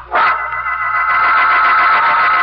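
A loud organ chord comes in suddenly just after the start and is held steady: a dramatic music bridge marking a scene change in a radio drama.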